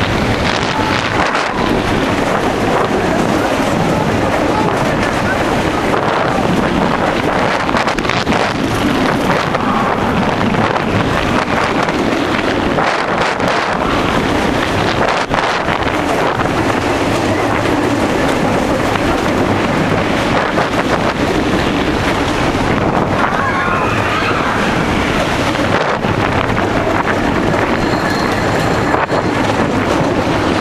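Bandit wooden roller coaster train running at speed over its wooden track, a loud steady rumble with wind buffeting the microphone. Riders scream briefly about three-quarters of the way through.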